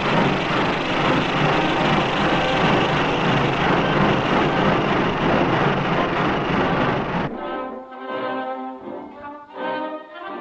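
Steam locomotive pulling away: a loud, dense rush of steam noise over quiet music, cut off suddenly about seven seconds in. Orchestral music with brass follows.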